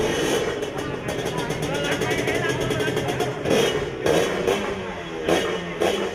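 Drag-racing motorcycle engine running at the start line, blipped up in several short revs in the second half.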